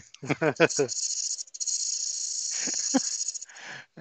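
Compressed-air blow gun hissing steadily for about two and a half seconds, with a brief break, blowing dust and shavings off wood on the lathe.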